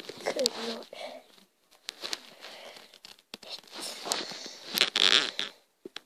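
A voice sounds briefly in the first second, then rustling and crackling noise with scattered clicks, and a loud hiss about five seconds in.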